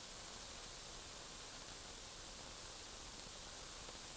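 Faint steady hiss, the noise floor of an old kinescope broadcast recording, with no other sound.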